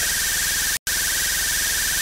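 Steady recording hiss with a high, faintly wavering whine and a low electrical hum: the background noise of the recording equipment. It drops out for an instant just under a second in, then cuts off at the end.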